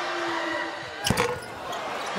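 A basketball bouncing on the hardwood court about a second in, the dribble a shooter takes at the free-throw line, heard over the steady noise of the arena.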